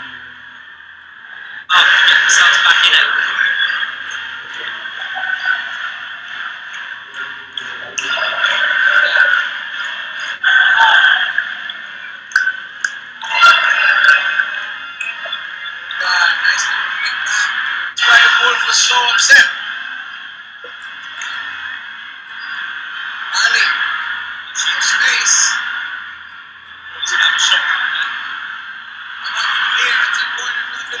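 Thin, band-limited television football broadcast audio: indistinct voices with some music, swelling and fading in loudness.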